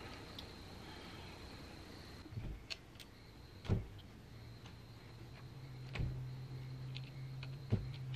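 Hex key loosening the screws of a Norton Commando's aluminium timing cover: a few faint, scattered metal clicks, the two loudest about four and six seconds in. A low steady hum comes in after about two seconds and grows stronger near the end.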